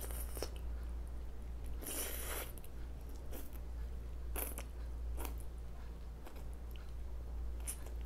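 A person slurping strands of spaghetti aglio olio off a fork and chewing, in several short wet bursts. The longest slurp comes about two seconds in.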